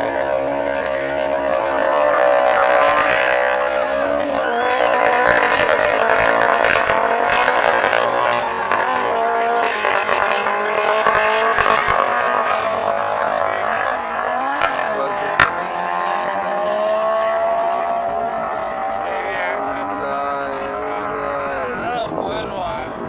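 Engines of a Suzuki Esteem and a Honda Civic revving and accelerating in a drag race, their pitch rising and falling, with a sharp click about fifteen seconds in.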